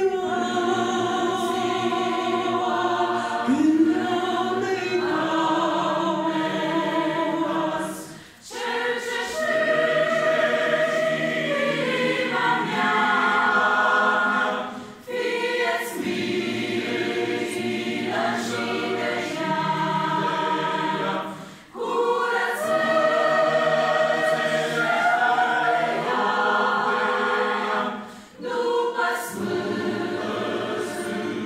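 Mixed choir of women's and men's voices singing a hymn in harmony, in long held phrases of about six to seven seconds, each ending in a brief break before the next.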